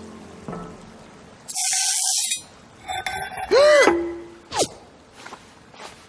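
Animated-show soundtrack with background music and cartoon sound effects: a short rushing noise, then a couple of brief pitched calls that swoop up and back down, and a quick falling whistle.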